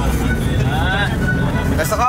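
Steady low rumble of a bus, its engine and road noise heard from inside the passenger cabin.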